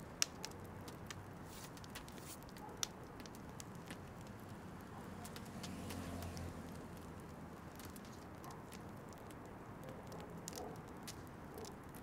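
Wood fire in a fire pit crackling faintly, with scattered small pops, two sharper ones in the first half-second and another about three seconds in.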